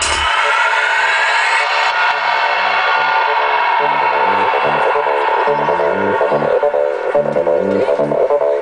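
Electronic dance music from a DJ set over a sound system. The kick drum and deep bass drop out right at the start into a breakdown: a rising synth sweep over the first two seconds, then a pulsing, stepping synth bassline with no kick.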